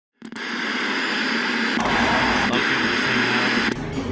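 Loud, steady static-like hiss that starts just after the beginning, with a few sharp clicks through it.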